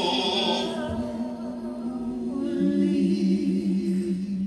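Unaccompanied worship singing: voices holding long, slow notes, the second one with vibrato.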